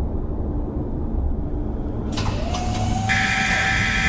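Low, steady industrial machinery rumble. About two seconds in, a hiss and a slightly rising whine join it, and a brighter hiss comes in near three seconds.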